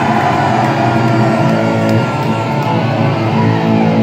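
Loud amplified live punk band playing: electric guitar and bass hold sustained chords as a song gets under way.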